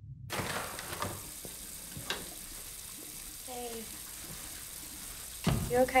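Restroom room tone whose steady hiss cuts in suddenly just after the start, with the soft rustle of a paper towel pressed against a face. Near the end comes a low thump, then a woman's voice.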